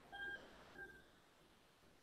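Near silence on a call line: a faint hiss with two short, faint pitched tones in the first second.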